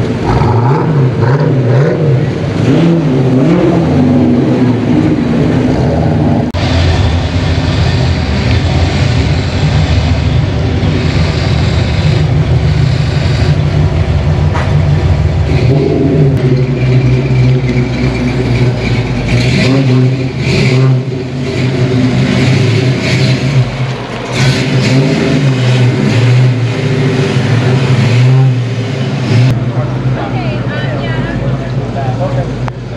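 Fox-body Ford Mustang V8 engines running with a steady low exhaust rumble, revving up a few times as the cars move around the lot.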